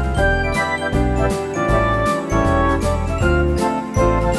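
Background music: an upbeat tune of changing melody notes over bass notes with a steady beat.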